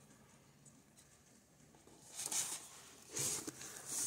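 Quiet at first, then, about halfway in, a large hardcover comic book being closed and laid down on a desk: two short rustles of paper and cover about a second apart.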